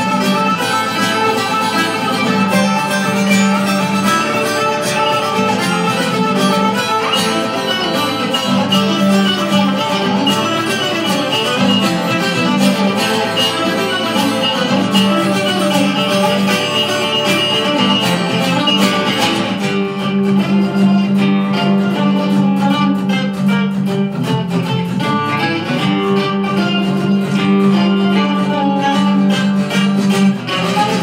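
An octave mandolin and an acoustic guitar playing a tarantella as a duet, a melody of plucked notes over a guitar accompaniment. About twenty seconds in, the playing turns to sharper, rhythmic strokes.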